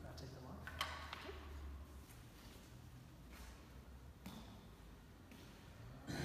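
Faint murmured speech in a large hall, with a low hum for the first two seconds, a click about a second in and a softer knock about four seconds in.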